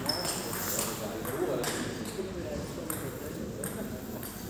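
Table tennis ball in a doubles rally, struck by bats and bouncing on the table: a handful of sharp, irregular knocks, with echo from the sports hall.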